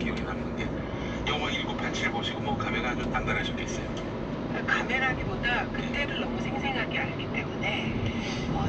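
Voices speaking over a steady low rumble and a constant hum.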